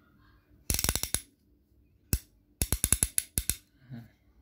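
Hand ratchet wrench with a 12-point socket head being worked by hand, its pawl clicking in two quick runs of clicks with a single click between them.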